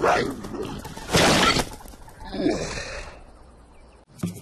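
Cartoon sound effects: a short hit at the start, then a loud shattering crash about a second in, followed by a brief vocal sound that fades away near the end.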